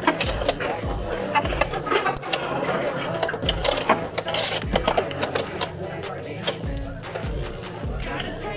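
Background music over Beyblade X tops spinning and clashing in a plastic stadium, with many sharp clicks from their hits.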